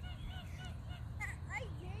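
Canada geese calling: a quick run of short, arched honks, about four or five a second, followed by a couple of rising calls, over a steady low rumble.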